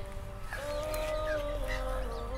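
Quiet background nasheed: a voice holding one long sung note, with a slight dip in pitch near the end.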